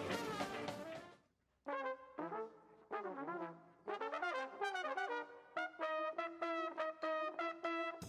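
Band music cuts off about a second in. After a short gap, trumpet and trombone play a jazz melody in short phrases and finish on a long held note in harmony.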